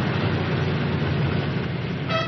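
Cadillac sedan's engine and tyres as the car drives off, a steady low rumble with road noise.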